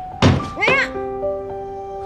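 A single knock on a glass window pane, followed by light music whose sustained notes begin right after it.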